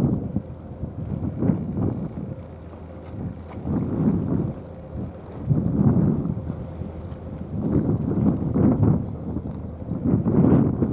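Wind buffeting the microphone in gusts: a low rumble that swells and fades every second or two.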